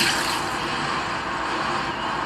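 Anime battle sound effect from the episode soundtrack: a sudden burst that carries on as a steady, loud rushing noise.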